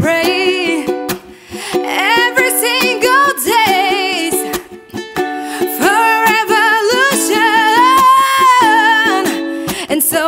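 Woman singing over a strummed ukulele, with long, sliding held notes in the vocal line.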